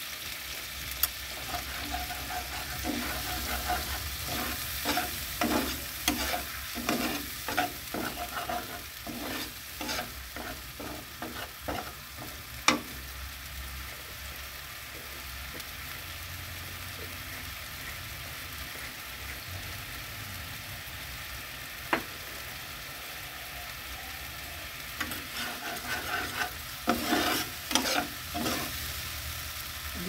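Spice paste frying and sizzling in oil in a kadai while a steel spatula stirs and scrapes the pan in quick strokes. The stirring stops a little before halfway, leaving a steady sizzle broken by a sharp tap, and the scraping strokes start again near the end.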